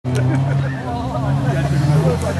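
Engine of an off-road 4x4 running at a steady speed, with people talking over it.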